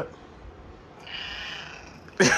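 A domestic cat's soft, breathy meow, starting about a second in.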